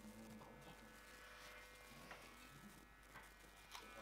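Near silence: a faint steady electrical buzz, with a few soft clicks from handling a small camera.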